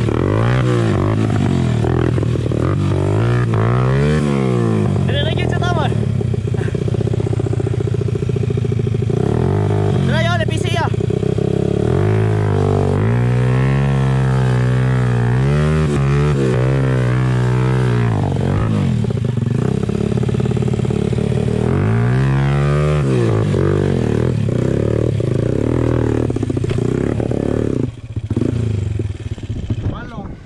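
Dirt bike engine running under load on a rough trail, its pitch rising and falling over and over as the throttle is opened and closed. About two seconds before the end the engine sound drops away.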